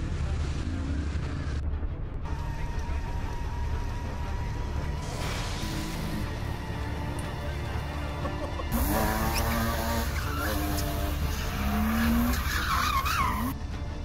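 Intro-montage soundtrack: music mixed with car engine and tire-squeal sounds. It gets louder about two-thirds of the way in, with gliding, wavering squeals, and the upper part cuts off suddenly just before the end.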